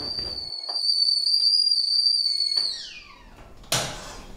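Stovetop whistling kettle whistling at the boil, a single steady high note, as the water has come to the boil. About three seconds in the note slides down in pitch and dies away, and a brief loud rush of noise follows just before the end.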